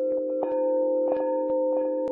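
Chime music: a steady cluster of ringing, held tones with many light, irregular strikes sounding over it.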